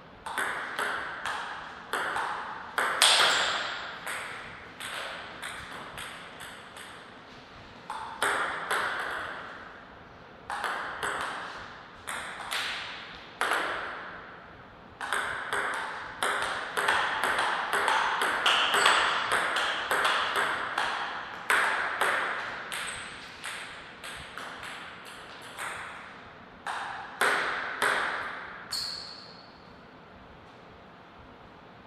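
Table tennis ball being hit back and forth, a quick series of sharp clicks with a short ringing as it strikes the bats and bounces on the table. The ball is in play for several rallies with short pauses between points, the longest lasting about ten seconds near the middle.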